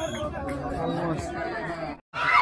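Low chatter of spectators' voices, a few indistinct people talking at once with no clear words.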